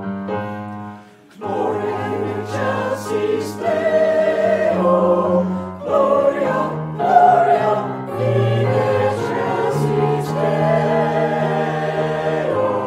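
A few repeated keyboard chords, a brief break about a second in, then choral singing of a praise song over sustained bass notes.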